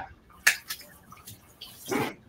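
Water dripping and splashing off a freshly washed head of cauliflower as it is handled in the hands. A single sharp knock comes about half a second in.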